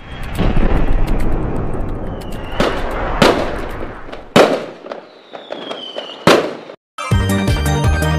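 Aerial fireworks bursting: a dense crackle broken by four sharp, loud bangs and two whistles falling in pitch. About seven seconds in, the fireworks cut off and electronic music with a steady beat begins.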